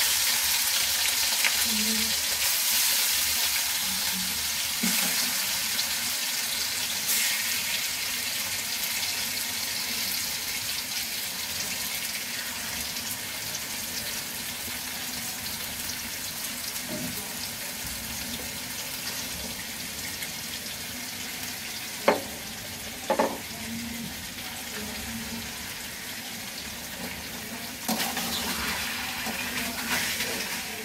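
Marinated goat meat pieces sizzling in hot oil in an aluminium karai, a steady hiss that slowly dies down. There are two short sharp knocks about two-thirds of the way through, and the meat is stirred and scraped with a spatula near the end.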